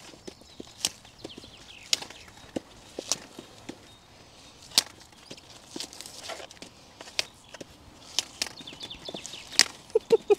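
Brussels sprouts being snapped off the stalk by hand, close to the microphone: a string of crisp snaps, roughly one a second at an uneven pace.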